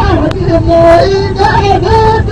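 Old recording of Rekrouki gasba music: end-blown reed flute playing a wavering, ornamented melody, with a second line moving below it, over a constant low hiss and rumble.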